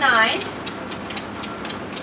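Motorised treadmill belt running, with a dog's paws tapping on the moving belt in a steady trot. A woman's voice is heard briefly at the start.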